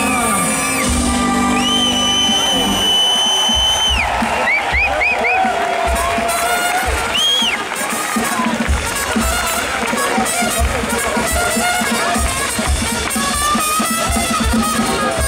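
Brass band playing live to a cheering street crowd: drums keeping a steady beat under horns. In the first half a high tone is held for about two seconds, followed by a quick run of short rising and falling squeals.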